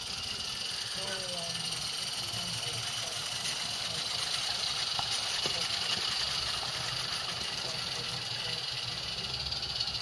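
Live-steam 16mm-scale garden railway locomotives running with a steady steam hiss and the low rumble of the train on the track, growing a little louder near the end as a locomotive approaches. Faint background chatter runs underneath.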